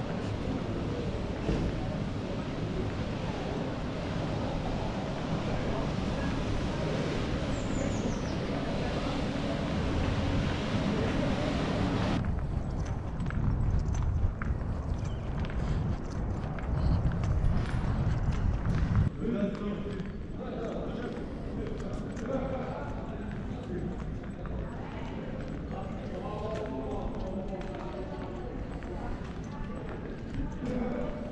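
Pedestrian-street ambience: indistinct voices of passers-by, footsteps and a low rumble of wind on the microphone. The sound changes abruptly about twelve and again about nineteen seconds in, where the recording cuts between takes.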